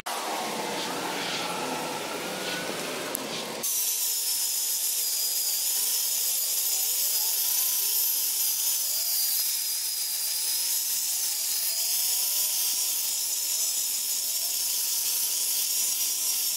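A rag rubbing cutting compound onto fiberglass gel coat, then, a few seconds in, an electric rotary buffer with a wool pad running steadily with a high whine as it polishes the compound into the hull, its pitch wavering slightly as it is worked across the surface.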